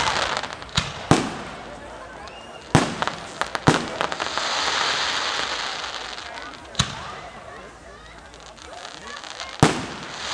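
Fireworks display: aerial shells bursting in sharp bangs, about seven of them at uneven gaps, with a steady hiss between bursts in the middle stretch.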